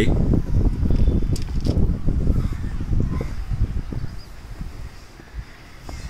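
Low, irregular rumble of wind buffeting the phone's microphone, easing off after about four seconds.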